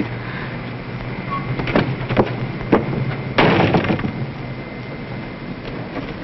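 A few short steps or knocks, then a door shutting with a bang about three and a half seconds in, over the steady low hum of an old film soundtrack.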